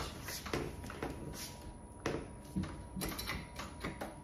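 A few light, scattered clicks and knocks of a metal entry handleset being handled and seated against a door as it is held in place.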